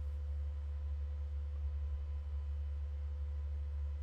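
A steady low hum with a faint, steady higher tone above it, unchanging throughout.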